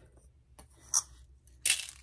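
Quiet handling of a ceramic bowl of salt and pepper over a steak, with a single light clink about a second in, then a short hiss near the end.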